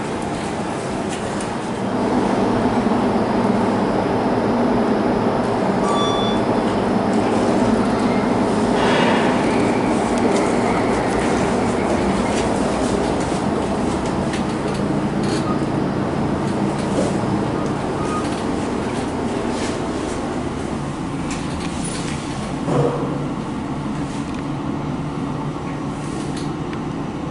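Passenger lift cab in motion: a steady mechanical rumble and hum that gets louder about two seconds in, with a short knock near the end.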